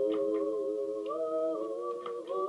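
Unaccompanied humming of a song's tune, held notes that step up and down in pitch.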